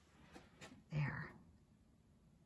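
A brief, soft murmured vocal sound from a woman about a second in, then quiet room tone in a small closet.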